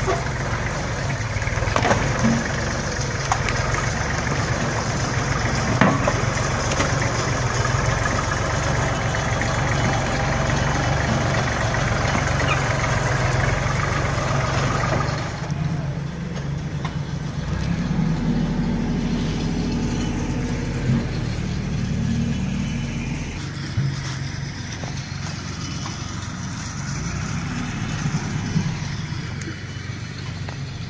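Kubota 38 hp compact diesel tractor engine running steadily. About halfway through, the sound becomes duller and a little quieter, with the engine hum continuing.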